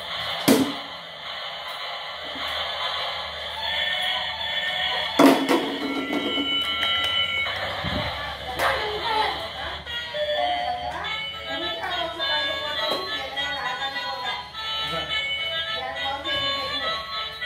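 Tinny electronic tune of short beeping notes from a small battery-powered light-up toy, with a sharp knock about half a second in and another about five seconds in.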